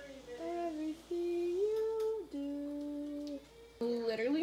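A voice humming a slow tune in long held notes, with a short pause near the end.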